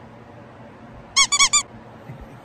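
Three short, high-pitched squeaks in quick succession a little past the middle, each rising and falling in pitch, over quiet room tone.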